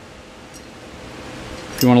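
Room tone: a steady low hiss with no distinct events, then a man starts speaking near the end.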